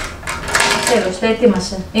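Indistinct voices talking, over light clicks and clatter of pens and stationery being handled and packed into a pencil case.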